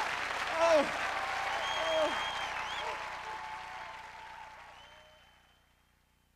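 Audience applauding and cheering, with a few shouts and high whistles, the applause fading out to silence about five and a half seconds in.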